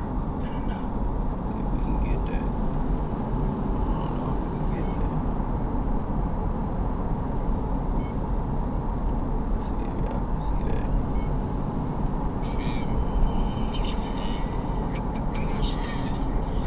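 Steady road and engine noise heard inside a car's cabin while it drives at highway speed, a constant low rumble with a few brief clicks.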